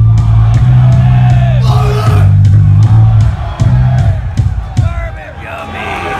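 Punk band playing live through a club PA: a loud, held distorted guitar and bass chord with cymbal crashes and shouted vocals. The chord breaks off about halfway through, leaving crowd yelling and loose guitar noise.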